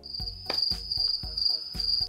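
Chirping-crickets sound effect, a steady high trill that cuts off abruptly at the end, used as the comic 'awkward silence' gag. A soft low beat runs underneath.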